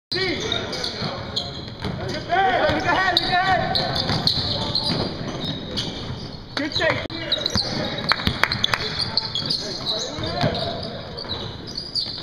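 Indoor basketball game on a hardwood court: a ball bouncing, short high sneaker squeaks, and players' voices, all echoing in a large gym. There is a run of sharp knocks about eight seconds in.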